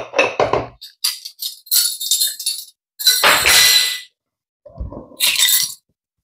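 Glass and metal kitchenware clinking and rattling as it is handled, in a series of short clatters, the longest and loudest about three seconds in.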